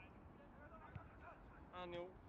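Faint, distant voices of football players calling across the pitch, with a louder, drawn-out shout starting near the end.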